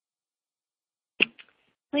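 Dead silence, then a short sharp click about a second in, followed by a voice starting to speak at the very end.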